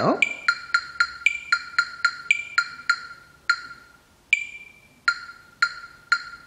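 Electronic metronome beeping at a fast tempo, about four beats a second, with a higher-pitched accent beep on every fourth beat. The beat falters and spaces out around the middle while the tempo is being reset, then picks up again.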